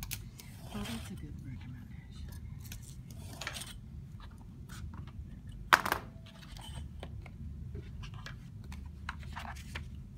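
A craft knife drawn through binder's board along a steel ruler in a few short scraping strokes, several passes needed because the board is tough to cut. A single sharp knock a little past the middle as the board or ruler is handled.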